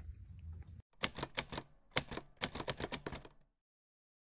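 A quick run of sharp clicks in small uneven clusters, like typewriter keys, starting about a second in and stopping a little before the end. Silence follows.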